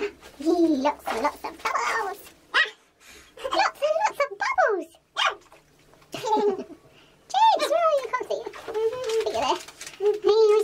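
High-pitched child's voice, vocalising and laughing in short phrases with no clear words. The longest, loudest stretch comes in the last few seconds.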